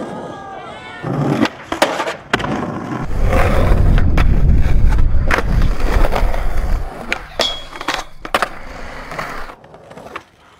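Skateboard on concrete: the wheels rolling with a loud low rumble from about three to seven seconds in, and sharp clacks of the board popping and landing throughout.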